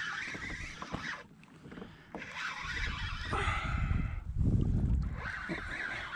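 Penn Spinfisher spinning reel being cranked, winding in line as a hooked flounder is brought up to the kayak, over a low rumble of wind on the microphone in the middle seconds.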